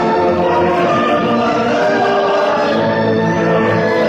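Choir and orchestra performing an operatic passage, with many voices holding notes together at a steady, full level.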